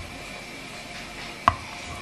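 A table knife tapping against a plate as breaded chicken nuggets are cut into pieces, with one sharp tap about one and a half seconds in.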